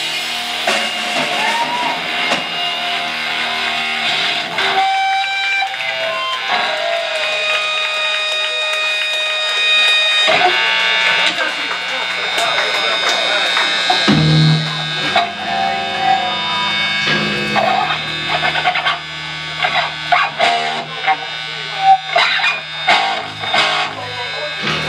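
Electric guitar and bass guitar playing loose held notes between songs rather than a full song. A low bass note comes in about two-thirds of the way through, and scattered drum hits sound near the end, with voices underneath.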